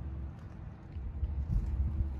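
Low rumble of wind buffeting the microphone, swelling about three-quarters of the way through, with a faint steady hum underneath.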